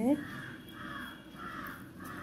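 A bird calling repeatedly outside with harsh caws, about four calls roughly half a second apart.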